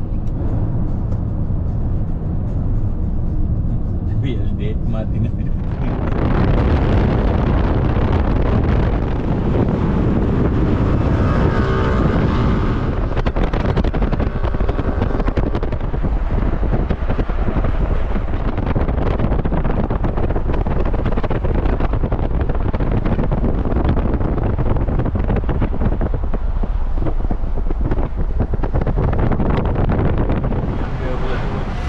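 Road and wind noise from a moving car. About six seconds in it suddenly grows louder and hissier and stays that way. Around twelve seconds in, a passing vehicle's engine briefly rises and falls in pitch.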